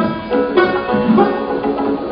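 Persian classical music: a tar playing a melody of separate plucked notes that ring on.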